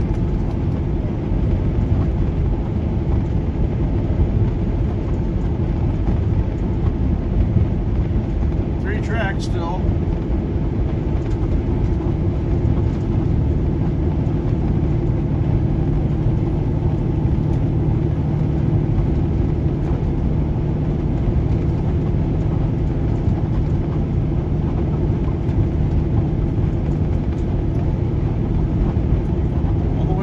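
Steady road noise of a car driving at speed, heard from inside the cabin: a low rumble of tyres and engine, with a steady hum joining in from about thirteen seconds to near the end.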